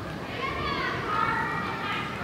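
Girls' voices calling and shouting to each other across an indoor soccer field during play, with the high calls starting about half a second in.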